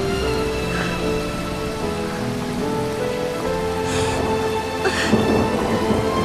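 Steady rain falling, heard under a soft background music score of sustained notes.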